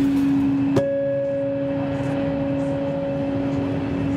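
Amplified acoustic guitar letting two notes ring on through the PA: a low note held steady, joined about a second in by a sharply plucked higher note that also sustains.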